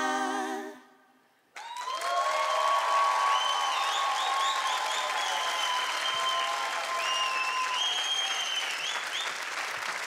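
A held sung note fades out within the first second. After a short pause, a live audience breaks into loud applause with high-pitched cheering.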